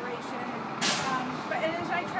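A woman talking over street noise from a city bus passing close by, with a short burst of hiss about a second in.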